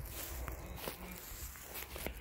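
Footsteps on dry straw mulch, a few soft rustling steps.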